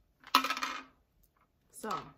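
Plastic protein shaker bottle clinking as it is lowered and set down after drinking: one sharp clink with a brief ring, about a third of a second in.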